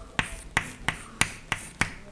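Chalk striking a blackboard as letters are written: a run of sharp taps, about three a second.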